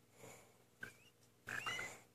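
Cockatiel chick calling: a short rising chirp about a second in, then a louder, hissy call with a rising whistle near the end.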